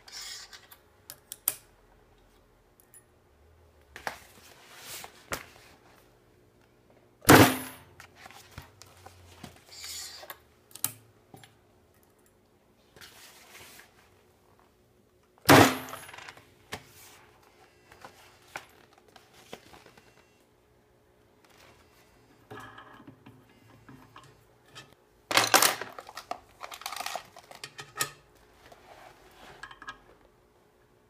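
Micron America MIC-02 electric grommet press coming down with sharp, loud clanks, about 7 s and 15 s in and again near 25 s, each stroke setting a self-piercing grommet and washer. Between strokes, softer clicks and rustles of metal grommets and fabric being handled.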